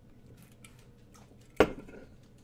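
Faint wet mouth sounds of someone chewing a jelly bean, then a sudden sharp burst of sound about one and a half seconds in as she reacts to the taste.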